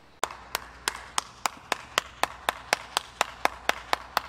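A single person clapping hands in a steady, even rhythm of about four claps a second, starting just after the opening.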